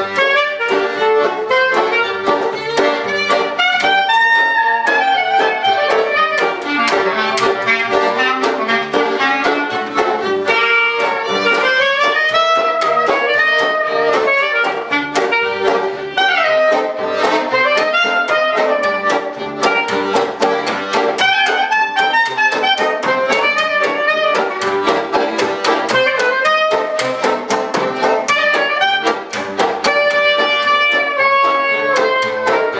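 Small acoustic band playing an instrumental passage: a woodwind leads the melody over a banjo, a fiddle, a bowed-and-plucked double bass and an accordion, in a jazz-tinged folk style.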